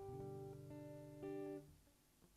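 Acoustic guitar played softly, three chords struck about half a second apart and left to ring, the last one dying away just before the end.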